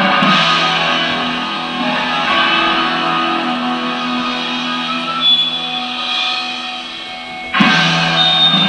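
Live rock band playing: electric guitar chords ringing on and slowly fading, then a loud chord struck again near the end.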